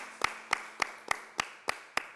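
Hands clapping in a steady rhythm, about three to four sharp claps a second, in time with one another.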